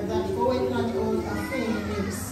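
A woman's voice speaking over a microphone, with other voices overlapping in the room.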